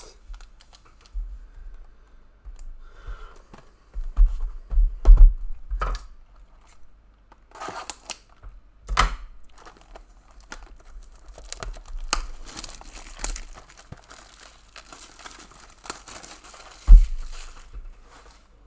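Trading-card packaging being handled: wrappers tearing and crinkling and cardboard rustling, with scattered knocks on the table. The loudest is a thump about a second before the end, as a card box is set down.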